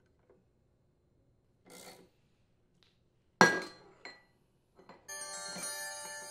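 A faint rustle, then a sharp metallic clink with a brief ring and a smaller clink as a jaw-style flywheel puller is handled against the engine's aluminium flywheel. About five seconds in, a sustained caution-alert chime starts and holds.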